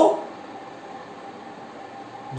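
A pause in a man's speech filled by steady background noise with a faint constant hum; the tail of a spoken word ends just at the start.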